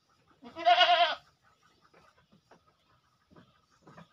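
A goat bleats once, a single wavering, quavering call lasting under a second, about half a second in.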